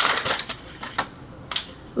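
Foil blind bag crinkling as it is torn open and the figure's black plastic capsule is pulled out, followed by a few light plastic clicks.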